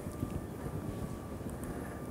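Room tone of a lecture hall during a pause in speech: a steady low rumble with a faint steady hum.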